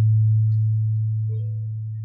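A single deep gong note, struck just as the singing breaks off, ringing as one steady low hum that slowly fades. It marks the close of the sung phrase in the campursari accompaniment, and a brief faint higher note sounds about halfway through.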